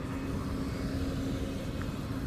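Car driving slowly past at close range, its engine a steady low hum.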